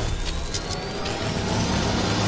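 Cinematic sound-effect riser from an animated logo outro: a dense rushing noise with a low rumble and a thin tone rising steadily in pitch.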